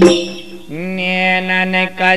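Bundeli Diwari folk song: the drum and jingle rhythm stops, and after a brief pause a male singer begins a long held note, sliding up into it and holding it steady.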